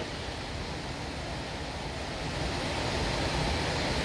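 Steady rushing background noise with no distinct events, swelling slightly in the second half.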